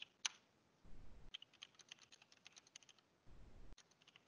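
Faint typing on a computer keyboard: a quick run of light keystrokes as a sentence is typed, stopping shortly before the end.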